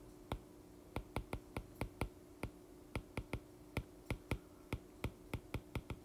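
Stylus tip tapping and clicking on an iPad's glass screen during handwriting: a string of sharp, irregular clicks, about three a second, over a faint steady hum.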